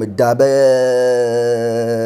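A man's voice holding one long vowel sound at a steady pitch for about a second and a half, a drawn-out sound between spoken phrases.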